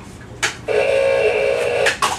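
Tin toy robot switched on and off. A switch clicks about half a second in, then a steady pitched tone sounds for just over a second and cuts off abruptly near the end.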